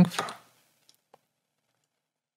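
The end of a spoken word, then near silence broken by two faint, quick computer mouse clicks about a second in.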